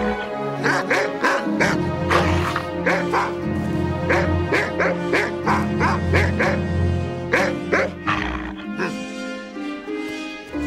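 Background music with a dog barking over it in many short, repeated barks, which thin out near the end.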